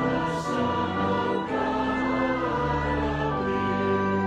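A choir or congregation singing a hymn in held notes over sustained accompaniment, the pitch moving from note to note every second or so.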